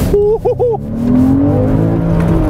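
Porsche Cayman S flat-six engine heard from inside the cabin, pulling under acceleration with its pitch rising steadily over the last second or so.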